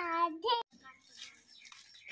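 A child's high-pitched, drawn-out sing-song voice that stops about half a second in, followed by faint soft rustles.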